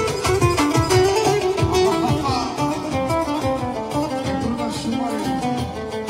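Live manele band playing an instrumental: a fast plucked-string melody runs in quick notes over a steady beat on a large drum.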